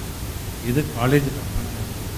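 A man's voice through a microphone: a few words about halfway through, otherwise a pause, over a steady hiss.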